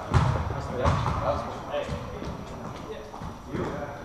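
Players' voices and calls in an echoing gymnasium, with sharp thumps of a volleyball being struck near the start and about a second in.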